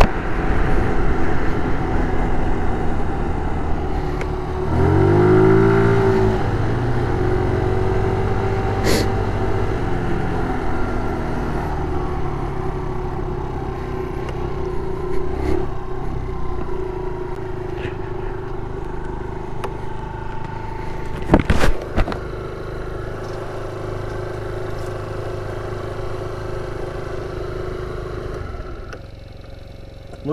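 GY6 four-stroke single-cylinder scooter engine running while riding, with road and wind noise; its note rises and falls about five seconds in. Two sharp knocks come a little past the middle, and the engine noise drops away near the end as the scooter stops.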